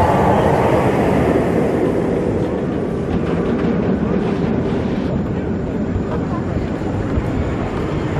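Roller coaster train on a B&M steel hyper coaster, running at speed along its track with a loud, steady rumble that eases slightly after the first few seconds.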